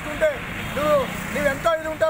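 A man speaking in Telugu in short phrases, with a steady rumble of road traffic behind.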